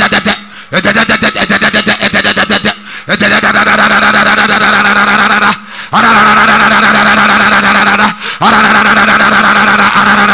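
A man's voice through a microphone and PA making a loud, rapid vocal trill held on one steady pitch, not words: a quick pulsing stretch at first, then long held bursts broken by short pauses for breath.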